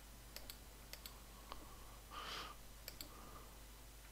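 Faint computer mouse clicks, several of them in quick press-and-release pairs, over a steady low mains hum, with a short soft hiss about two seconds in.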